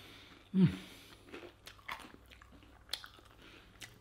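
A person chewing a mouthful of toasted pull-apart bread with melted brie and cranberry, mouth closed, with faint small crunches and wet mouth sounds and a short appreciative "mm" about half a second in.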